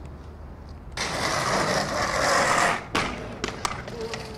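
Aggressive inline skates grinding for about two seconds in a loud, steady scrape, then landing with a few sharp clacks and rolling away on pavement.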